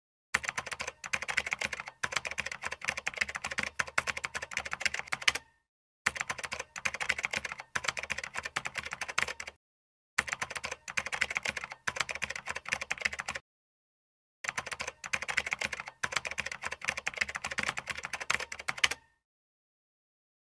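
Rapid typing clicks, a keyboard-typing sound effect, in four bursts of about three to five seconds each, separated by short pauses.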